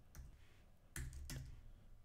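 Faint typing on a computer keyboard: a few separate keystrokes, the clearest about a second in.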